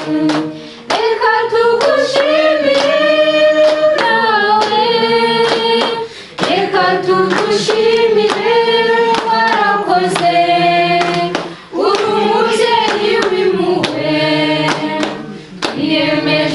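A group of voices singing together in unison or harmony, accompanied by steady rhythmic hand clapping. The song runs in phrases of about five seconds, each ending in a short breath-like pause.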